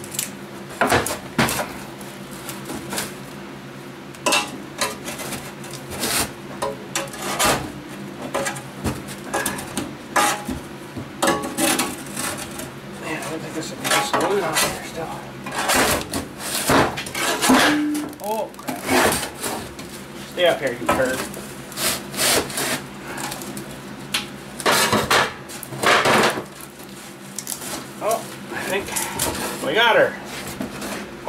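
The steel seat pan of a John Deere 2720 tractor seat clunking and scraping on a steel workbench while its glued-on vinyl cushion is pried and torn off. Irregular knocks and clatter run throughout over a steady low hum.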